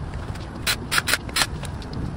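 Handling of a disassembled golf cart DC motor's end cap and parts: four sharp clicks and knocks in quick succession, over a steady low background rumble.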